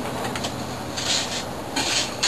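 Hand rubbing and scraping on PVC pipe parts as a butt joint is cemented and pressed together. It comes in two short hissy strokes, one about a second in and one near the end.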